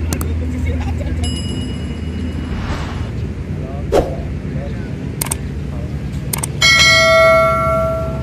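Loud ringing bell-like ding with many overtones, starting sharply near the end and lasting about a second and a half: the notification-bell sound effect of an on-screen subscribe animation. Underneath, a steady low outdoor rumble with a few clicks and a thin high tone in the first few seconds.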